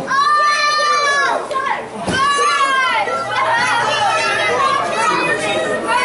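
High-pitched shouting from spectators, mostly children's voices: one long held yell in the first second, another about two seconds in, then several voices yelling over one another.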